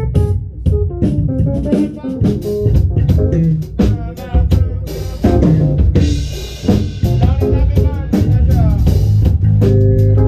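Live band playing: electric bass in busy plucked lines over a drum kit and keyboard, with a cymbal wash in the middle. Near the end the music settles onto sustained low notes.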